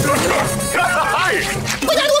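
Cartoon soundtrack: music under a run of short, high, yelping cries that bend up and down during a scuffle.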